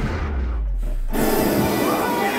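A deep low rumble under muffled music for about a second, then a sudden loud rush of noise as the full sound opens back up, over a leap and a pyrotechnic spark burst.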